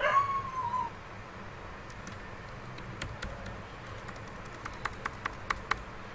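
A short high whine at the very start, about a second long and falling slightly in pitch, then scattered clicks of computer keyboard keys while code is being edited.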